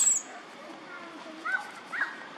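Baby long-tailed macaque crying: a shrill squeal tailing off at the start, then two short, rising squeaks in the second half. These are the distress cries of an infant injured by a bite.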